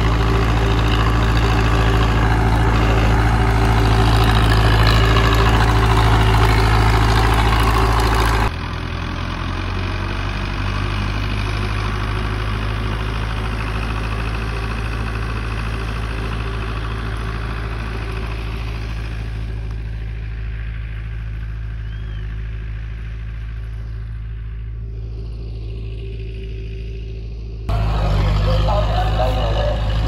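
Belarus 510 tractor's diesel engine running steadily under load while pulling a seed drill. It is loud and close at first, drops suddenly to a quieter, more distant sound about eight seconds in, and is loud and close again near the end.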